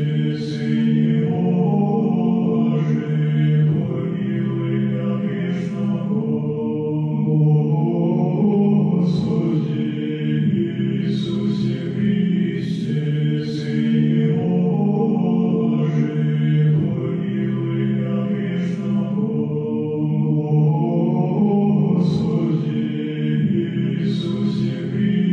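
Background music: a choir chanting in low, sustained voices, phrases held and overlapping, with soft sibilant consonants now and then.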